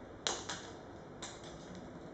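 Thin rods on the hanging bellows of a kinetic sculpture ticking against one another as the pieces swing: a sharp click about a quarter second in, a second right after it, and a lighter one a little past halfway.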